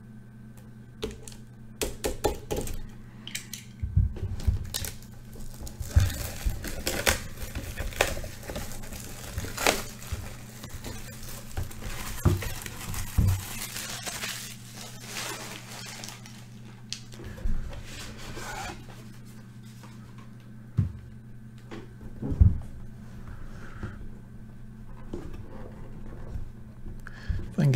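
Utility knife slitting the plastic shrink wrap on a cardboard card box, then the wrap crinkling and tearing as it is pulled off, with scattered clicks and knocks as the box is handled. A few separate knocks come near the end, and a steady low hum runs underneath.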